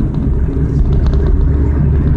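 Car engine and road noise heard from inside the cabin while cruising in fourth gear: a steady low rumble.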